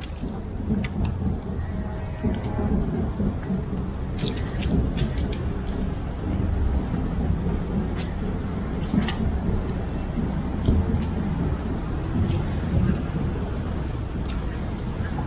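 Steady low outdoor rumble, with a few light clicks about halfway through.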